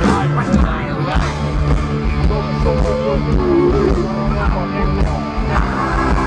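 Hard rock band playing live on a large stage, heard from the crowd: electric guitars, bass and drums, with sustained and bending guitar notes over a steady beat.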